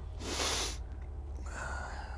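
A short, breathy puff of breath close to the microphone, lasting under a second near the start, followed by a fainter breath near the end.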